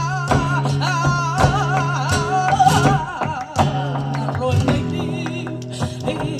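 Live flamenco music: a singer's wavering, ornamented vocal line over acoustic flamenco guitar, with sharp percussive hits throughout.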